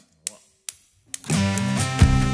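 Drumsticks clicked together to count in, sharp clicks about half a second apart, then the band comes in just over a second in with sustained keyboard chords.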